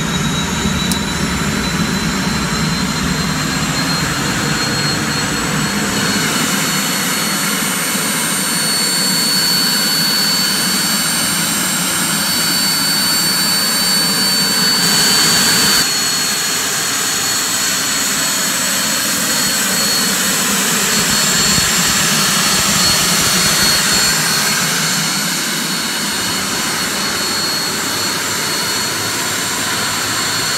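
Aérospatiale Lama helicopter's Turbomeca Artouste turboshaft engine running during start-up, with a steady high-pitched turbine whine. A low rumble underneath fades about six seconds in.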